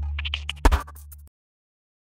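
Electronic outro music with a deep held bass. A quick run of sharp hits comes about half a second in, and the music cuts off abruptly a little over a second in.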